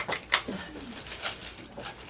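Vacuum cleaner attachments being handled, with two sharp clicks right at the start and lighter knocks later on.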